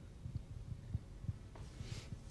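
Faint low thuds of a handheld microphone being handled and moved, with a soft breath near the end.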